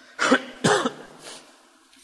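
A man coughing twice in quick succession, followed by a fainter third cough.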